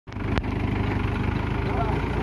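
Mahindra 575 DI tractor's four-cylinder diesel engine running steadily with an even low pulse, and a single sharp click about half a second in.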